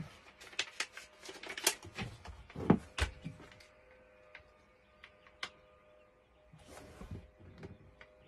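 Crackling and rustling of a peel-and-stick tile and its paper release backing being handled and pressed onto the wall, with light taps. Busiest in the first three seconds, then only a few scattered clicks and a short rustle near the end.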